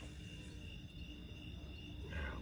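Crickets singing a faint, steady high-pitched trill, with a low rumble beneath.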